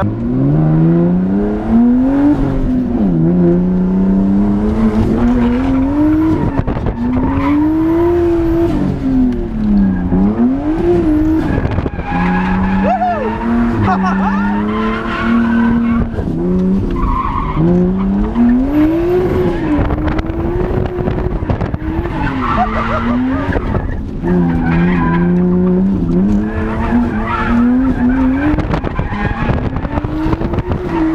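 Nissan R32 Skyline GTS-t's turbocharged straight-six, heard from inside the cabin, revving up and dropping back again and again, every two to three seconds, through a drift run, with tire squeal over it.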